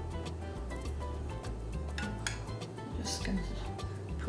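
Background music with a steady bass line, over light clinks of a metal fork against a ceramic baking dish as pats of butter are set onto sliced potatoes.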